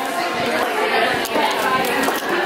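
Overlapping chatter of many people talking at once in a large indoor room.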